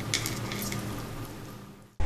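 Hands mixing and pressing sticky, syrup-soaked boondi with nuts in a wooden bowl: a soft crackly rustle with small clicks, dying away near the end.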